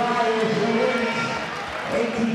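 Indistinct voices with no clear words.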